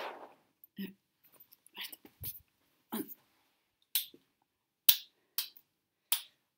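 Scattered sharp clicks and light knocks, roughly one a second, with a duller low thump a little after two seconds.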